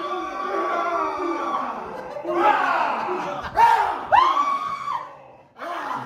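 Several men shouting and screaming playfully over one another, with a few sharp high yells in the middle; the voices drop away shortly before the end.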